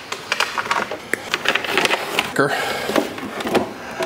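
Handling noises from charger cords and the wooden board being worked by hand: an irregular run of short clicks, taps and rustles.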